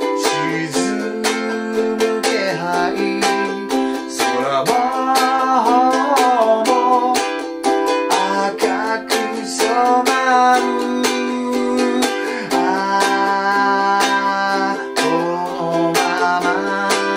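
A man singing a Japanese ballad while strumming chords on a ukulele in a steady rhythm, moving through Am, Em7, F, G7 and C.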